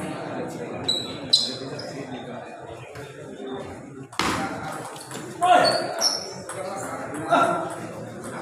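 Table tennis ball bouncing, a few sharp ringing clicks in the first second and a half, over the chatter of people in a large hall. There is a loud sharp burst about four seconds in, and louder bursts of voices after it.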